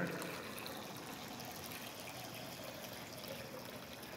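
Water poured from a glass pitcher into a baptismal font, a steady trickle.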